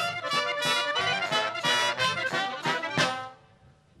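Small folk band of saxophones and horns with drums playing a brisk instrumental break in a maitunata song, breaking off about three seconds in.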